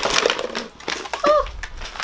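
Crinkling of a plastic pouch of bath salts as it is handled and lifted, with a brief spoken 'oh' about a second in.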